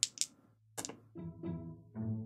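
A few sharp clicks near the start, then soft background music of plucked notes from about a second in.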